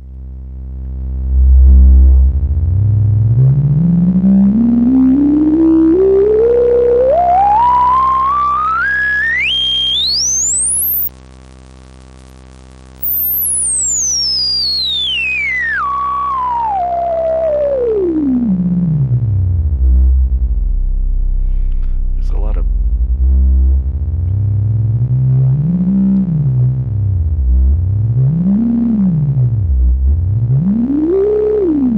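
XaVCF analog filter (an OB-Xa-style AS3320 design) at full resonance, its cutoff swept by hand over a low sawtooth drone. The whistling resonant peak climbs slowly through the harmonics to the very top over about ten seconds. The level then drops sharply for about two seconds, the peak sweeps back down to the bass, and near the end it is rocked up and down three times in the low range.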